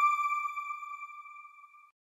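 Electronic chime of a news outro logo: one bell-like tone ringing out and fading steadily away, dying out just before the end.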